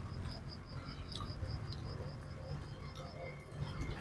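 Faint insect chirping: a steady, even high pulse about five or six times a second, over a low background rumble.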